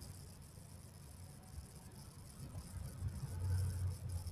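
Quiet background with a faint low rumble that grows louder near the end.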